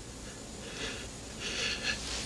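A man's quiet, shaky breathing as he cries, with two soft breaths that rise and fall.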